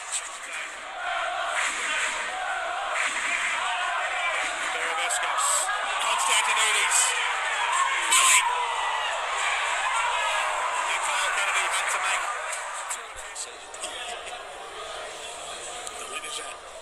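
Football match broadcast sound: loud, indistinct voices over crowd noise, with a sharp knock about halfway through.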